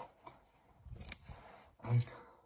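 Paper trading cards handled on a tabletop: a stack of cards picked up with sharp snaps and papery rustling, loudest about a second in. A short, loud low sound comes near the end.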